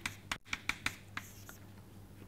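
Chalk tapping and scratching on a chalkboard as symbols are written: a quick run of sharp taps in the first second and a half, then only faint ticks.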